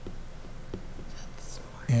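A pause in a meeting-room discussion: quiet room tone with a faint whisper and a couple of soft clicks, then a voice starts speaking just before the end.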